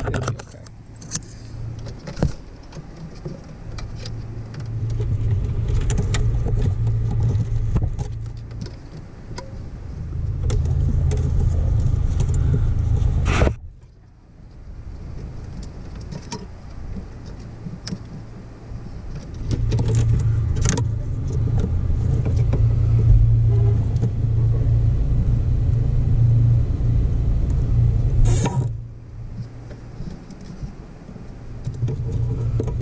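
Gloved hands handling wiring-harness connectors and loose wires at a truck's steering column: scattered plastic clicks and rustles. Long stretches of low rumble come and go, each cutting off suddenly, about a third of the way in and near the end.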